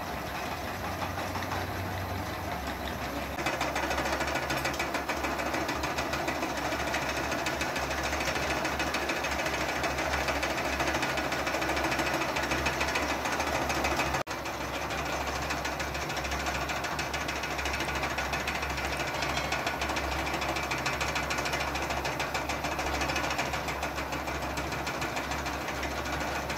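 Small electric wool-spinning machines running together, a steady motor hum with a fast, even rattle. It grows louder about three and a half seconds in and drops out for an instant about halfway.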